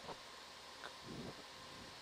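Faint steady hiss of background room noise, with a few brief faint sounds.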